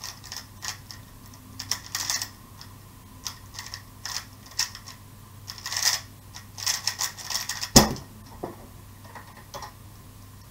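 MF3RS M 2020 magnetic 3x3 speedcube turned fast during a speedsolve, in quick runs of plastic clicks and clacks. A single loud thump about eight seconds in is the cube and hands coming down on the timer to stop it.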